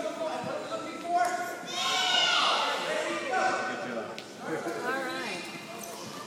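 Children's voices shouting and chattering over one another in a large gymnasium, with one loud, shrill shout about two seconds in.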